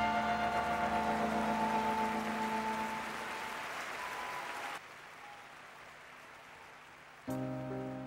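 The live band's closing chord, with electric guitar, rings on and fades under steady crowd applause, and the sound drops away suddenly about five seconds in. Near the end, soft keyboard chords begin a new song.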